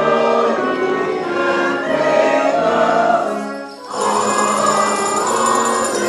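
Church choir singing a hymn with brass accompaniment. The music dips briefly a little before four seconds in, a breath between phrases, and the next phrase begins.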